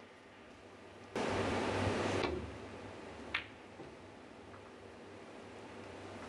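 A loud burst of noise lasting about a second, then about two seconds later a single sharp click of snooker balls striking, over the quiet of the arena.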